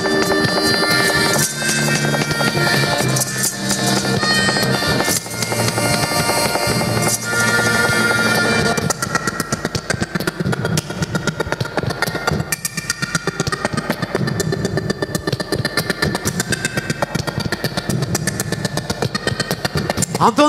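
Live band music with sustained instrumental notes that ends about nine seconds in. It gives way to a steady crackle of audience applause.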